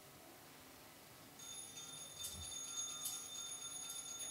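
Altar bells rung at the elevation of the host during the consecration. After a second and a half of near silence the ringing starts: a high, steady ring renewed by a fresh shake about every 0.8 s.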